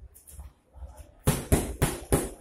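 Boxing gloves striking focus mitts: after a quiet first second, a quick combination of three sharp punches about a quarter second apart.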